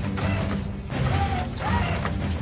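Mechanical sound effects of metal armor plating being fitted and locked: ratcheting clicks and two short whirs that bend up and down in pitch, over background music.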